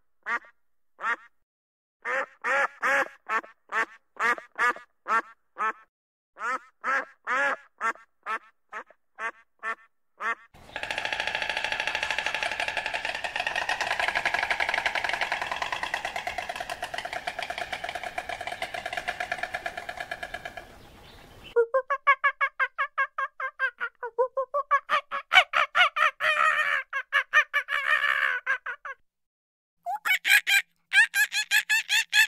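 Ducks quacking. First come short runs of separate quacks, then about ten seconds of a dense chorus of many ducks calling together, then a fast string of quacks.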